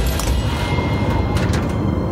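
Mechanical sound effects of a small ornate brass mechanism being worked: a few sharp metallic clicks over a low, dense rumble as a door is opened.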